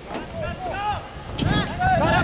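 Several voices shouting short calls across a football pitch, overlapping and getting louder from about halfway in, with a single sharp knock shortly before that.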